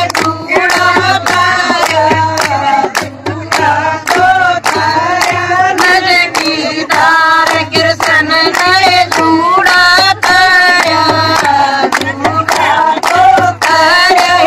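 A group of women singing a Haryanvi folk bhajan to Krishna together, keeping a steady beat with hand claps about twice a second.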